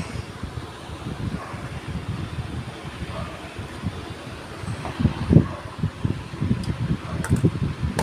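Electric desk fan running, its airflow buffeting the microphone in a low, uneven rumble. A few sharp clicks come near the end.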